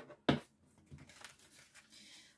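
A deck of tarot cards being shuffled by hand: one sharp tap or snap about a third of a second in, then soft rustling and light flicking of the cards.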